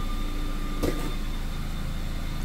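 Nissan Rogue Sport's engine idling steadily in gear inside a closed garage, a low even hum, with one light click about a second in.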